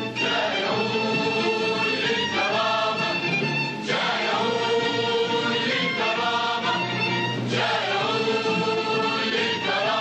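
A large choir singing together in long held phrases, with brief breaks between phrases every few seconds.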